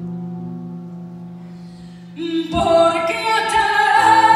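Live band holding a soft sustained chord, then coming in loudly about two and a half seconds in with a female voice singing over it.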